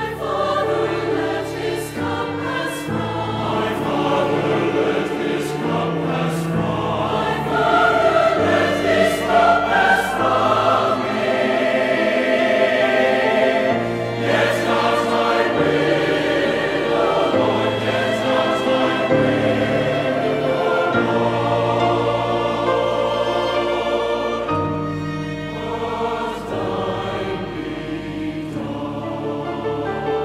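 Church choir singing a sacred anthem, accompanied by piano and strings, with the voices swelling fuller about a third of the way in.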